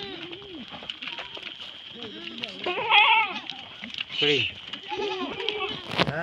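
A herd of goats bleating repeatedly as they move past, several overlapping calls with the loudest about three seconds in.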